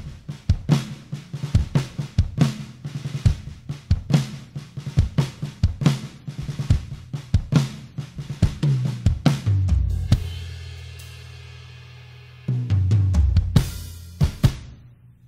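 Mapex Saturn acoustic drum kit played in a steady groove of kick, snare and cymbals. The mix is a rough mix of the raw multi-mic recording, with the natural reverb of a large church sanctuary. About ten seconds in, a big hit lets a cymbal and a low boom ring out for a couple of seconds before the playing resumes.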